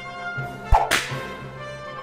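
Background orchestral music with one sharp crack and swish a little under a second in. The crack is an edited-in transition sound effect.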